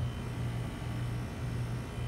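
Carrier central air conditioner's outdoor condensing unit running: a steady low hum with an even hiss of noise over it.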